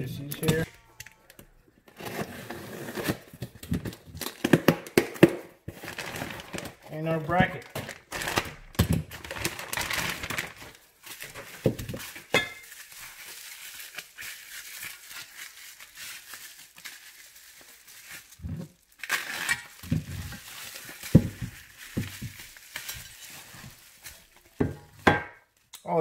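Plastic bubble wrap being handled and pulled off parts: irregular crinkling and rustling that comes and goes, with a few sharp clicks and knocks in between.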